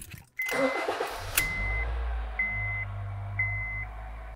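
2013 Honda Fit's 1.5-litre four-cylinder engine cranking briefly, catching about a second in, and then idling steadily. This is the sign that the immobilizer accepts the key with the newly programmed used PCM. A chime beeps four times over it, about once a second.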